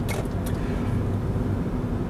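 Steady low rumble of a car driving, heard from inside the cabin: engine and road noise at an even speed.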